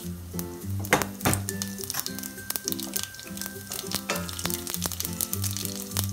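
Cumin seeds and whole spices sizzling and crackling in hot oil in a steel pan, with two sharp clicks about a second in. A slow music melody plays steadily under it.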